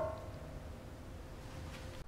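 The last piano chord of a song dying away, one note lingering faintly for about a second and a half, then only faint background noise.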